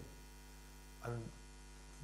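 Steady low electrical mains hum in the sound system, a constant buzz at the 50 Hz mains frequency and its overtones. A man's voice says a single short word about a second in.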